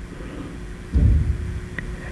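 Low steady hum of room tone through the sound system, with a low rumble on the handheld microphone about a second in and a faint click near the end.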